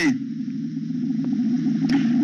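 A steady low droning hum made of several low tones held together, loud and unchanging.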